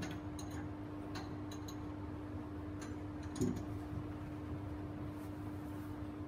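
A steady low hum with a few faint ticks early on and a brief soft knock about three and a half seconds in.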